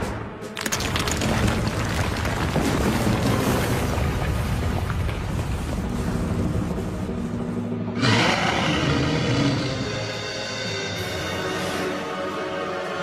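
Dramatic cartoon score mixed with a long rumbling, crashing sound effect of ice shattering. About eight seconds in, a fresh swell of music with held tones takes over.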